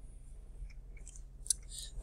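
Low steady hum of room tone with a few faint clicks and short hisses in the second half, one sharper click about halfway through.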